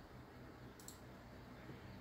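Near silence: faint room tone with a low steady hum, and one soft computer-mouse click a little under a second in.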